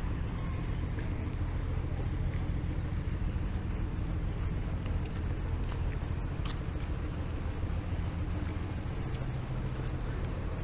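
Steady low engine rumble, heard from beneath a concrete road bridge, with a few faint clicks, one sharper about six and a half seconds in.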